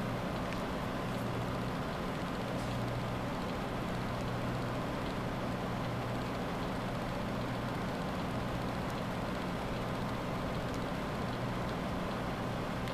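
Steady low hum with an even hiss of background noise, with a few faint ticks.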